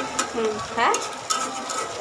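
Spatula stirring and scraping vegetables in a karahi while they sizzle and fry, with short clicks of the spatula against the pan. A short vocal sound comes about halfway through.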